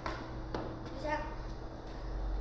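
A jump rope and a child's feet tapping faintly on a concrete floor as she skips, with a brief voice about a second in, over a steady low hum.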